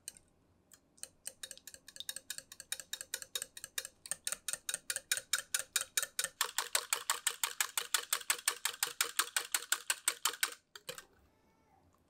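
Wire whisk beating eggs in a glass measuring cup: the wires click against the glass in a quick, even rhythm that starts slowly, builds to about six strokes a second and stops suddenly about a second before the end.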